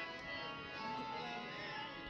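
Harmonium playing quiet, sustained notes.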